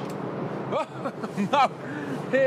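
Steady low machinery hum on board a large ship, with a couple of brief voice sounds about a second in and near the middle.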